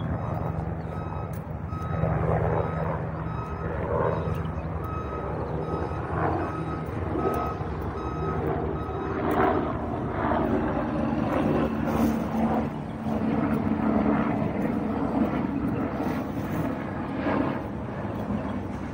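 A short electronic beep repeating about once a second over a steady engine hum. The beeping stops about halfway through.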